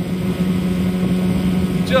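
Boat motor running steadily at slow no-wake trolling speed, a constant low hum with water and wind noise around it.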